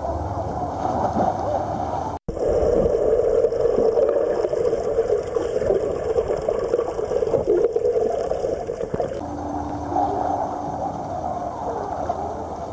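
Muffled water noise of a swimmer moving through a pool, heard through a camera held underwater, with the dull, low bubbling typical of underwater recording. It drops out for an instant about two seconds in and changes character about nine seconds in.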